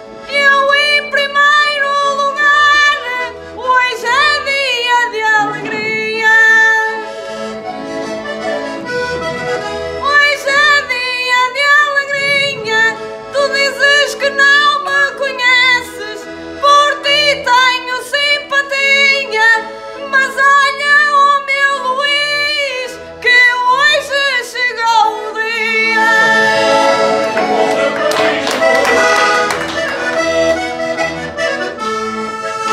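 Portuguese concertina (diatonic button accordion) playing a lively instrumental break between sung verses of an improvised desgarrada. A quick melody runs over a regular pulsing bass-and-chord accompaniment.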